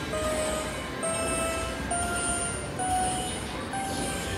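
Slot machine bonus sounds: a run of held chime tones, each a step higher in pitch than the last, about one a second, as the total win counts up. Under them runs a steady low din.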